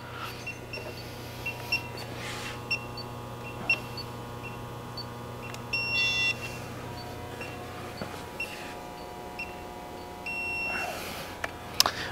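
Short electronic beeps from the calibration frame's laser units as they are switched off. The beeps come at irregular intervals, with a quick run of them about six seconds in and a longer held beep near the end, over a steady low electrical hum that drops away about eight seconds in.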